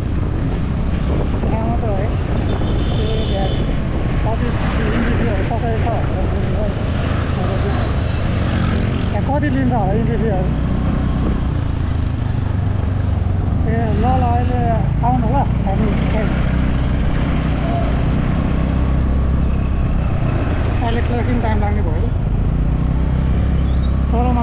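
Steady low rumble of street traffic and wind buffeting the microphone, with a man talking on a phone in short stretches over it.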